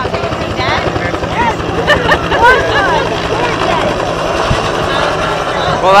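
Bell AH-1 Cobra helicopter flying low overhead, its rotor chopping steadily throughout.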